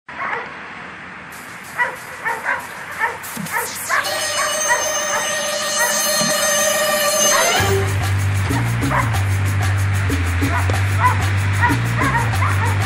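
German Shepherd barking several times, sharp single barks through the first few seconds and now and then after, over music that swells into a held chord and then settles into a steady bass beat about eight seconds in.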